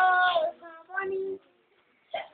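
A young child singing two drawn-out notes, the first sliding down at its end; the sound cuts out completely about a second and a half in.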